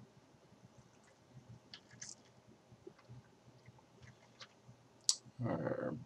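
Quiet room tone with scattered faint, short clicks, then a man's voice starts near the end.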